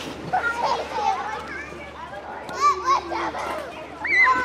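Outdoor swimming pool crowd ambience: many children's voices shouting and calling over one another. Two louder shouts come close together about three seconds in.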